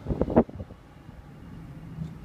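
A man's voice trailing off in the first half second, then the steady low rumble of a car's engine and tyres heard from inside the moving car.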